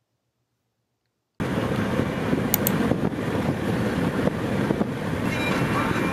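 Silence, then about a second and a half in, steady road and wind noise from a moving car starts abruptly. A few faint held tones join it near the end.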